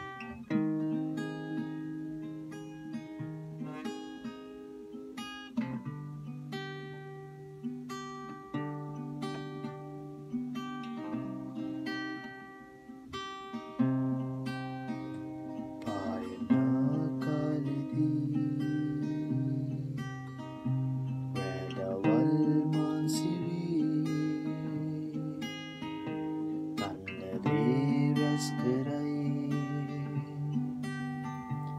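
Solo acoustic guitar playing a song's melody in plucked single notes and picked chords. It grows louder and fuller about halfway through.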